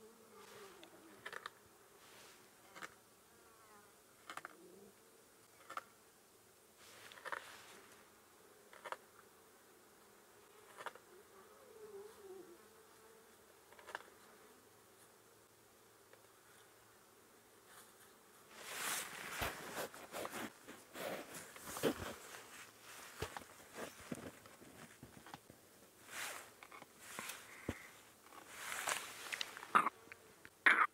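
Lioness feeding on a buffalo carcass: scattered crunching and tearing as her teeth cut through the thick hide. The tearing comes thicker and louder over the last ten seconds. A faint insect buzz wavers in pitch at the start and again about twelve seconds in.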